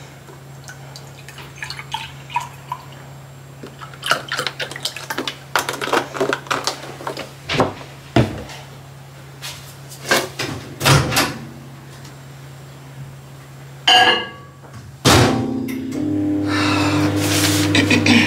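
Kitchen handling sounds: milk poured from a carton into a ceramic mug, then a run of clicks and knocks as the carton and dishes are set down on the worktop, over a low steady hum. Near the end, after a couple of sudden knocks, a louder steady machine hum starts.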